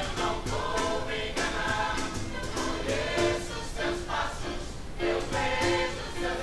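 Youth choir singing, a run of short held notes with crisp attacks between them.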